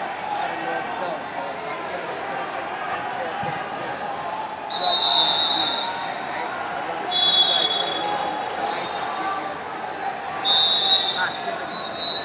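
Busy wrestling tournament hall: echoing crowd chatter and voices. From about five seconds in, referee whistles from the surrounding mats blow about four times, each a steady shrill blast about a second long, at slightly different pitches.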